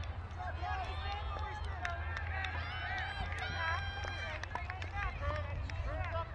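Several voices of players and spectators calling out across an open soccer field, none of it clear as words, with one voice holding a long call near the middle. A steady low rumble runs underneath.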